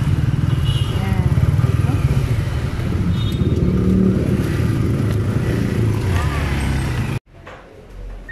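Vehicle engine running close by in slow city traffic, a dense low rumble with a rapid, even pulse, with faint voices over it. It cuts off abruptly about seven seconds in, leaving a much quieter room with a voice.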